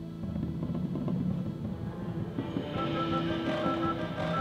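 High school marching band playing. A dense low-pitched texture starts just after the beginning, and about two and a half seconds in, higher sustained parts come in, one of them a repeated high note, and the music grows louder.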